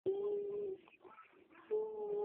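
A toddler's voice making two long, steady wordless sounds, one at the start and another near the end.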